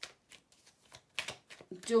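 A deck of tarot cards being shuffled by hand: a string of short, irregular card clicks and slaps.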